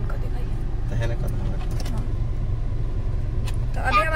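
Steady low rumble of a car's engine and road noise heard inside the cabin, with a single light click near the end.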